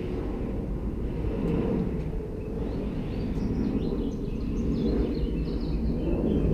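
Steady outdoor city background noise heard from a high balcony: a low rumble of distant traffic, with a few faint high chirps in the second half.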